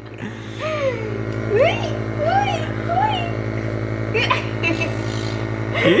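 Home compressor nebulizer running with a steady electric hum. Over it, in the first half, a young child makes short rising and falling vocal sounds.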